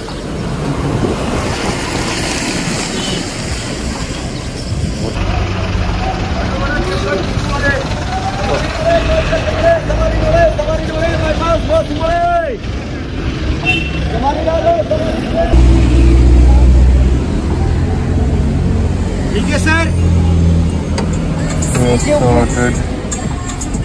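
Bus stand din: diesel bus engines running, with a heavy, loud engine rumble about two-thirds of the way through, mixed with voices.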